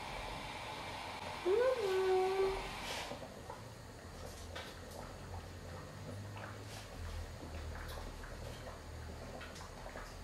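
A woman's short hummed "mmm", rising and then held for about a second, as she tastes a piece of hard cheese off the knife. After it come faint scattered clicks and knocks of handling things on the kitchen counter over a low hum.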